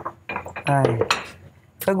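Kitchen utensils and dishes clinking and tapping on a counter during food preparation, a few short knocks, with a brief snatch of a woman's voice in the middle.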